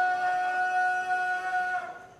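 Public-address feedback: a single steady pitched tone rings through the speakers without wavering, then cuts off suddenly near the end.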